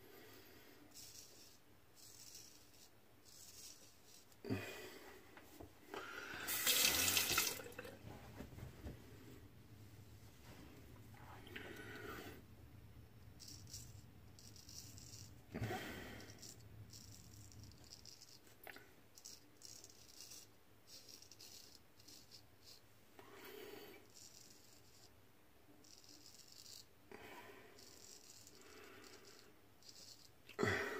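Gold Dollar 66 straight razor scraping through lathered stubble in short, faint, scratchy strokes. A tap runs briefly, louder, about six seconds in.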